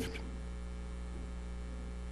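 Steady electrical mains hum: a low, even buzz made of a few evenly spaced steady tones, with a faint hiss above it.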